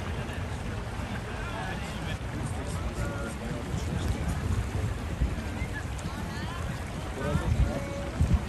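Wind buffeting the microphone in a steady low rumble, with a few stronger gusts near the end, under scattered chatter of beachgoers' voices.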